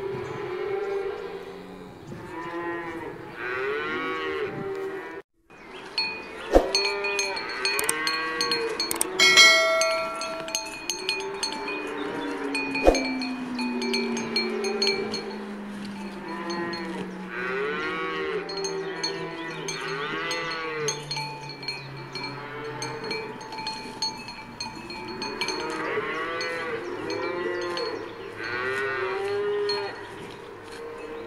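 Cattle mooing over a steady clanking of cowbells, with a short dropout about five seconds in.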